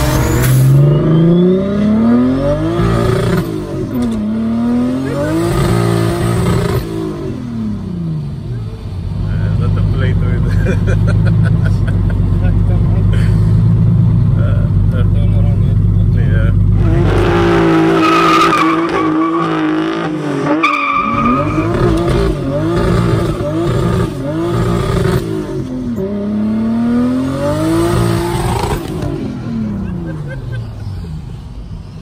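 A Toyota Hilux pickup's swapped-in 2JZ-GTE turbocharged straight-six accelerating hard. Its pitch climbs and drops repeatedly as it pulls through the gears. Midway it holds a steady drone for several seconds, then pulls through more gears towards the end.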